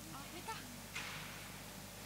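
Low murmur of indistinct voices, with a brief hissing burst about halfway through.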